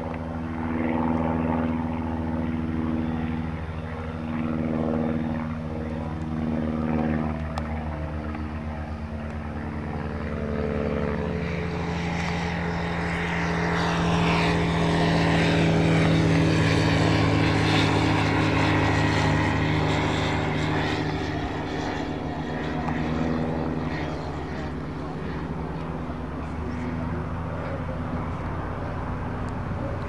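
Light propeller aircraft engine droning overhead. In the first several seconds its pitch wavers up and down. The drone swells to its loudest in the middle, with the pitch sweeping as the plane passes, and then eases off.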